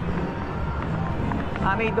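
Casino floor ambience: a steady low din of machines and people, with faint clicks. Near the end a woman's voice begins.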